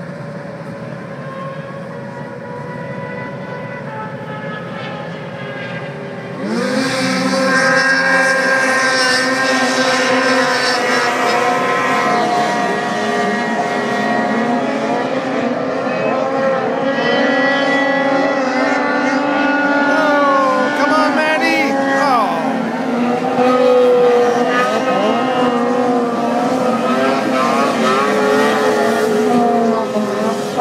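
Several snowmobile engines running hard as the sleds race across open water. The sound jumps louder about six seconds in, and the engine pitches rise and fall as the sleds accelerate and turn.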